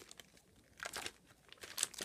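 Clear plastic bag pages of a handmade flip book crinkling as they are handled and flipped open: a few short rustles about a second in and again near the end.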